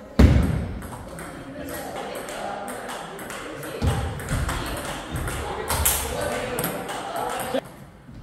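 Table tennis rally: a celluloid/plastic ping-pong ball clicking off rubber paddles and the table in quick succession, with three heavy low thuds, the loudest just after the start. The rally ends abruptly near the end.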